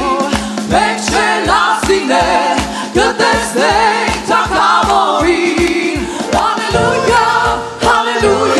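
Live gospel worship song: a woman singing lead with backing singers joining, over keyboard and a steady quick beat. A held bass note shifts to a new bass line near the end.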